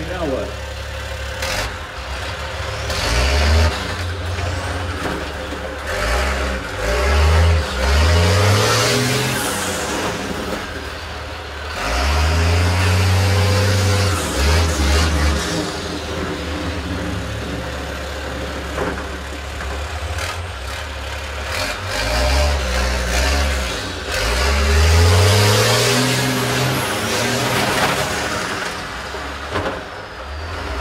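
School bus engines revving hard and dropping back several times, each rev a rising then falling pitch, as the buses drive and ram one another in a demolition derby.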